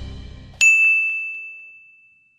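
A single bright bell-like ding, struck about half a second in and ringing out, fading over the next second and a half: a logo chime sound effect. Before it, the tail of the background music fades away.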